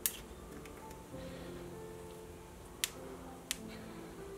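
Soft background music, with three sharp metal clicks: a drill-bit shank being fitted into a steel tool holder and a hex key engaging its grub screw. The first click, right at the start, is the loudest; the other two come a little under a second apart near the end.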